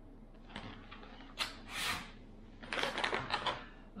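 Foil-lined freeze-dried meal pouch crinkling and rustling as it is handled, in a few short bursts: one brief, a louder one about halfway, and a run of crinkles near the end.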